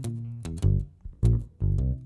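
Instrumental fill of plucked electric bass and guitar: about four short, separately stopped notes with a strong low end, between sung lines of a funk-style cover song.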